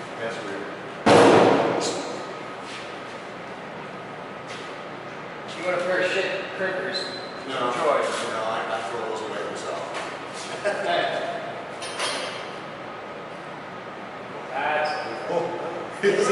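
A single loud slam about a second in, dying away over about a second, followed by indistinct voices talking.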